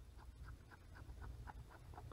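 Faint, irregular small ticks of a Surface Pro 3's N-trig stylus tip tapping and dragging on the glass screen while drawing.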